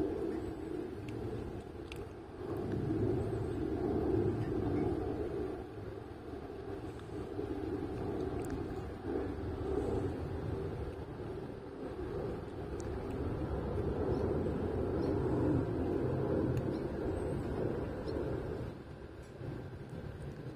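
A low outdoor rumble that swells and fades every few seconds, with a few faint clicks.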